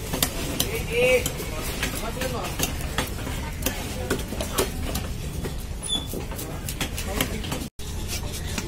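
Heavy fish-cutting knife chopping fish into steaks on a wooden stump block: irregular sharp knocks, several a second, over steady background noise. The sound cuts out for an instant near the end.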